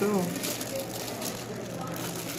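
Plastic wrapping on a playmat rustling and crinkling as hands handle it, over background chatter.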